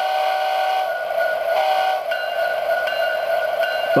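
A DCC sound decoder in a Bachmann HO-scale Norfolk Southern heritage diesel model sounds its multi-chime air horn through the model's small speaker. It gives several blasts of different length: a long one ending about a second in, a short one, then a longer run near the end. A steady engine sound runs underneath.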